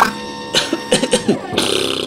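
Cartoon sound effects as a Dalek's plunger arm comes off a llama's mouth: a sputtering noise with falling pitch glides in the middle, then a short bright hiss near the end.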